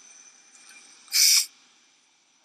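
A short, loud hissing screech about a second in, lasting under half a second, over a faint steady high-pitched background.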